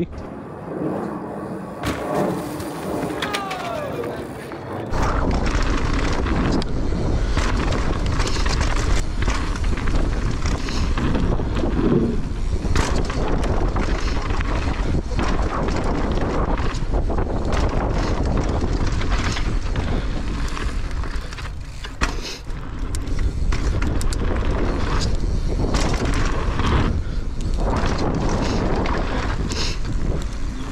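Mountain bike ridden down a dirt trail, heard from a camera on the rider: knobby tyres rolling on dirt and the bike rattling and knocking over bumps, under heavy wind on the microphone that sets in about five seconds in as speed picks up.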